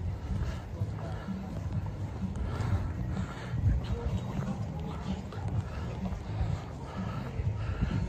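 Footsteps on brick paving while walking, with wind buffeting the phone's microphone in a steady low rumble. Faint voices of other people can be heard now and then.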